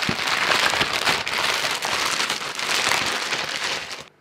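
Plastic courier mailer bag crinkling and crackling as it is torn open and crumpled by hand, a dense continuous rustle that cuts off suddenly at the end.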